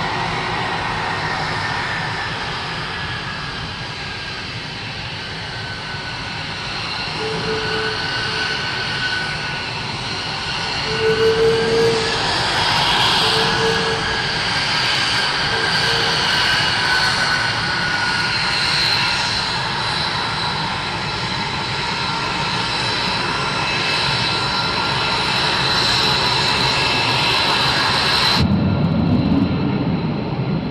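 Twin Pratt & Whitney F119 turbofan engines of an F-22 Raptor running at low taxi power: a steady jet whine with high tones that drift gently up and down over a low rumble, and a few brief lower tones around the middle. About two seconds before the end the sound changes abruptly to a duller, lower rumble.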